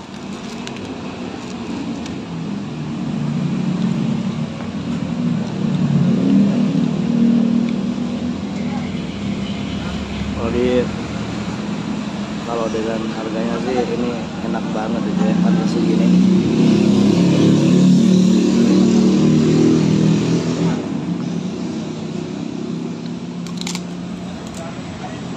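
Road traffic passing close by, a low engine rumble that swells and fades twice, with voices heard briefly in the middle.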